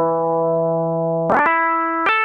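Electric guitar lead sample, a pop lead loop in G major, played back from a software sampler: one note held for over a second, then a quick change to a new sustained note.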